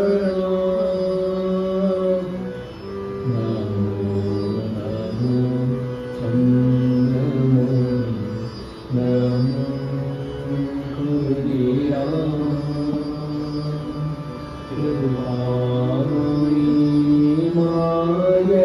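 A group of voices singing a devotional bhajan, with a harmonium playing along under the voices. The singing comes in long held phrases, with short breaks between them about every six seconds.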